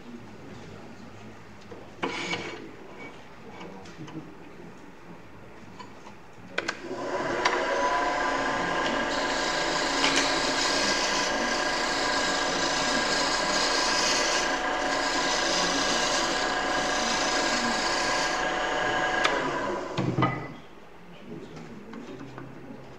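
Wood lathe spinning a rolling-pin blank while a turning tool cuts it flat: a steady pitched whine with a rasping hiss of the cut, starting about a third of the way in and stopping with a thump shortly before the end. A knock is heard about two seconds in, during the quieter opening.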